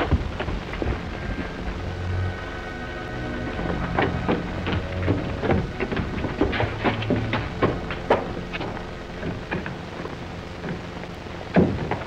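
Sustained low chords of an orchestral film score that shift every couple of seconds. Under them runs a constant crackle with scattered short clicks and knocks, as on an old film soundtrack.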